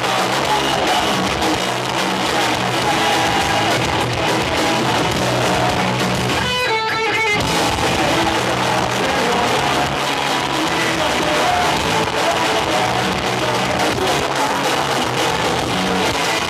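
Live melodic punk band playing loudly: distorted electric guitars, bass and drum kit with singing. About six and a half seconds in, the full band drops out for under a second, leaving a single ringing pitched note, then comes back in.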